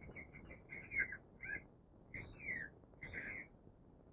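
Faint, repeated short bird chirps, several a second, some with quick falling notes, over the steady hiss of an old film soundtrack.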